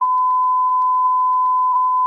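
A long, steady, single-pitched radio tone held level for about two seconds, then cut off. It is a fire dispatch alert tone on a radio channel heard through a scanner, sent between repeats of a call sending fire units to a vehicle fire.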